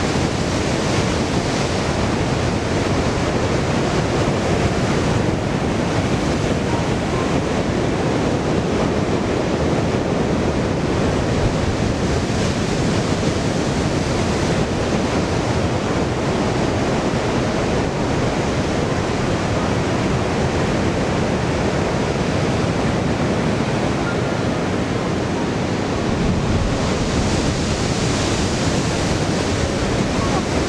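Ocean surf breaking and washing over coastal rocks, a steady rush of noise. It swells slightly at the start and again near the end as bigger waves break.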